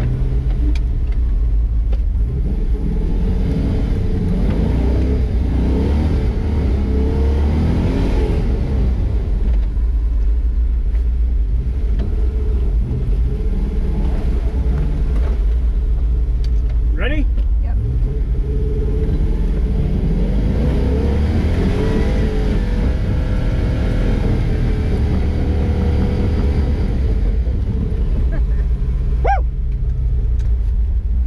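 Truck's swapped 6.0-litre LS V8 running under load on a climb, its revs rising and falling in two long surges over a steady heavy rumble. Two brief high squeaks cut in, about halfway through and near the end.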